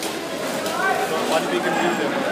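Indistinct chatter of several men's voices talking at once.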